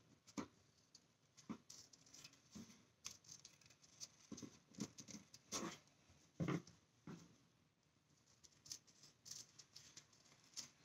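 Faint, irregular snips of scissors cutting through a paper towel.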